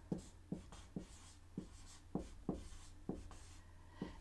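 Dry-erase marker writing on a whiteboard: a string of short, quiet strokes and taps, about two to three a second, as letters are written.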